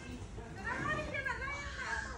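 A child's high-pitched voice talking faintly in the background over the low steady hum of a large hall.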